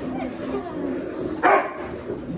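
A dog whining in wavering tones, with one short, sharp yip about one and a half seconds in.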